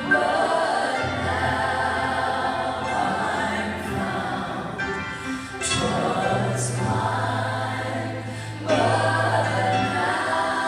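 Three women singing a slow gospel hymn in close harmony through microphones, holding long notes, over steady low accompaniment notes that drop out briefly in the middle.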